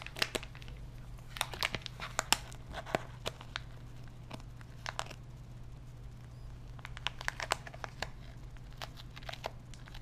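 Foil blind-bag packet and its paper insert being torn open and crinkled by gloved hands, in scattered clusters of short crackles, over a steady low hum.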